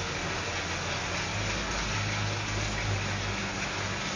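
Steady background hiss with a low hum underneath, no distinct events: the room and recording noise of a phone filming inside a shop.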